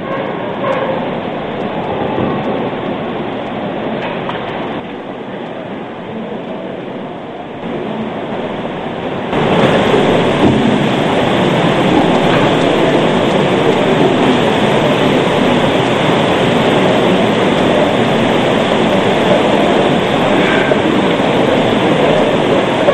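Crowd noise from a church congregation, a dense wash of many people, rising to a louder, steady level about nine seconds in.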